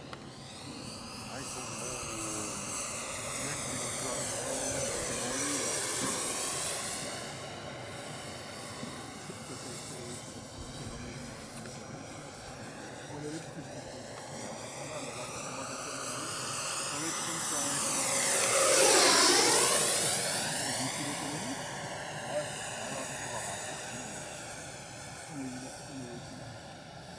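Electric ducted fan of an RC De Havilland Vampire model jet, an FMS 64 mm 11-blade fan on a 4S motor, whining as the model makes two low passes. The first swells about five seconds in and fades. The second, closer and louder, swells and fades around nineteen seconds in.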